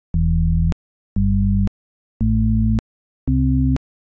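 LMMS TripleOscillator software synth playing four short, low, pure-toned chords, each about half a second long, one after another. Each chord is higher in pitch than the one before, and each stops with a small click.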